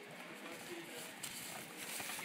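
Faint outdoor background with distant voices and light rustling, no loud event.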